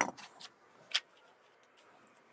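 Tailor's scissors snipping through shirt fabric: three short, sharp clicks close together at the start and one more about a second in.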